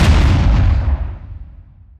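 Transition sound effect: a loud rumbling boom that peaks at the start and dies away over about a second and a half.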